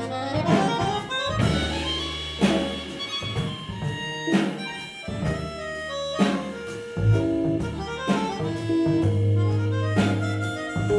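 Small jazz group playing live, with a melodica holding reedy lead notes over electric bass, drums and electric piano. Drum strikes land every half second or so under the held notes.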